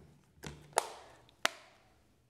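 Plastic Blu-ray case being folded shut, with two sharp plastic clicks about two-thirds of a second apart as it snaps closed, amid light handling noise.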